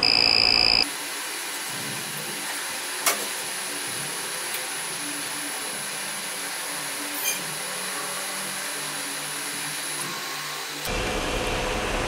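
A Creality 3D printer paused for a filament change: a high, steady beep from its alert buzzer cuts off about a second in. Then the printer's fans hum steadily, with one sharp click about three seconds in, and the hum grows louder near the end.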